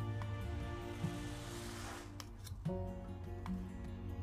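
Soft instrumental background music with long held notes. Around the middle a brief hissing swish, then a few light clicks, as a tarot card is slid off and the next one shown.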